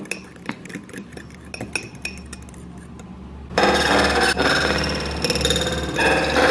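A metal fork stirring a wet strawberry and baking soda paste in a small glass bowl. At first there are light clicks of the fork against the glass. About three and a half seconds in it becomes a loud, fast whisking with rapid scraping against the bowl.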